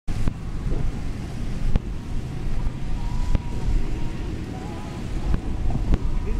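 Wind buffeting the microphone as a steady low rumble, with a few sharp knocks a second or more apart.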